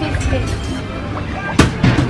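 Amusement arcade din of game music and chatter, with one sharp knock about one and a half seconds in as a thrown ball strikes the milk jug toss game.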